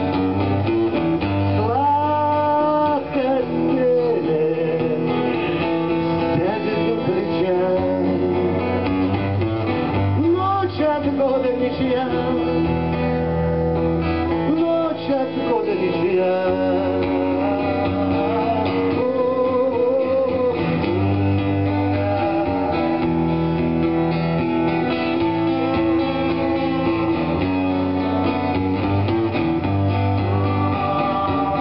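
A man singing while strumming an acoustic guitar, some of his notes held long with a waver in the pitch.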